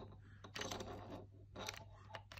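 Faint, scattered clicks and light scrapes of a microphone shoe mount being pushed against a camcorder's hot shoe, with the mount's screw not loosened enough for it to slide on.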